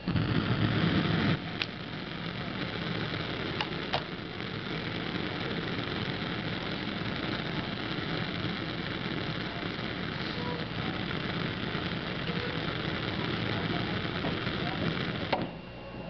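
Bunsen burner burning with a steady gas-flame hiss, louder for the first second or so, with a few faint clicks.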